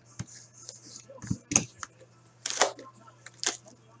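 Box cutter slicing the plastic shrink-wrap on a sealed card box, then the wrap being torn and pulled off in several short crackling rips, the loudest about two and a half seconds in.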